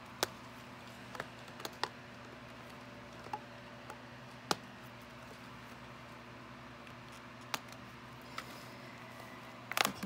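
Scissors snipping the ties that hold a toy to its packaging card: a few scattered sharp clicks, the loudest about four and a half seconds in, over a faint steady hum.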